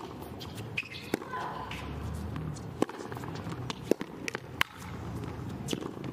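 Tennis rally on a hard court: sharp racket-on-ball strikes about once a second, with ball bounces between them, over a low crowd background.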